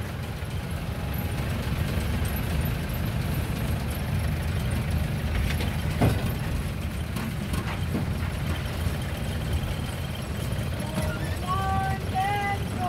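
Jeep's engine idling with a steady low rumble, with a single knock about halfway through.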